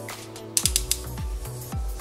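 Plastic ratchet swivel joint in the elbow of an action figure clicking in a quick run of small clicks about half a second in, over background music.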